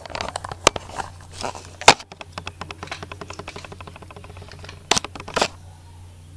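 Small objects handled close to the microphone: a few sharp knocks and a fast, even run of small clicks lasting about three seconds, over a steady low hum.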